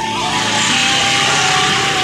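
A motor scooter passing close by, its engine and tyre noise swelling into a rush about half a second in. Music with a held melody continues underneath.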